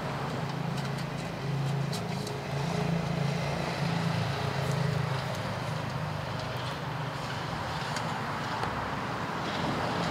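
Low, steady rumble of a motor vehicle running, growing louder for a few seconds from about one and a half seconds in before settling back.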